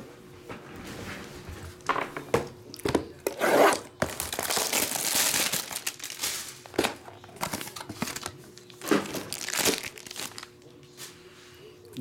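Plastic shrink wrap crinkling and tearing as a sealed trading-card box is unwrapped and opened by hand, in a run of irregular rustles with a longer, louder stretch about four seconds in.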